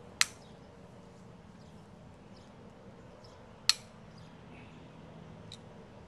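Hoof nippers snapping through a cow's hoof wall: two sharp cuts about three and a half seconds apart, and a lighter one near the end.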